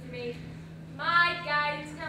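A young woman's high voice, drawn out and sing-song with rising and falling pitch, starting about a second in, over a steady low hum.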